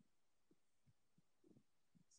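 Near silence, with a few faint, short low thumps.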